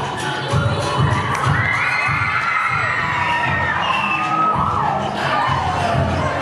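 A crowd of teenage students screaming and cheering with excitement at a surprise celebrity appearance. The high, wavering shrieks of many voices build from about a second in, over the low beat of the dance song they were practising to.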